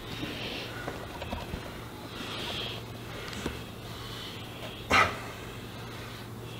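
A man's heavy breathing under effort during banded lying leg curls: breathy exhales, then one short, sharp exhale about five seconds in, over a steady low hum.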